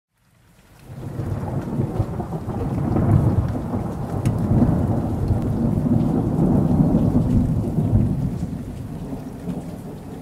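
Rain with rolling thunder, fading in over the first second, swelling through the middle and easing off toward the end.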